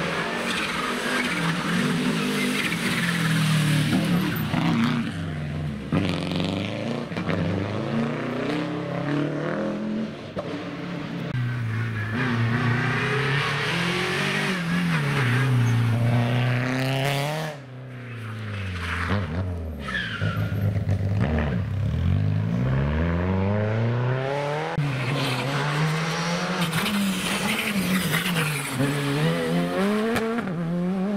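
Rally cars passing one after another on a tarmac stage, their engines revving hard. The engine pitch climbs and falls again and again, with a brief lull a little past halfway.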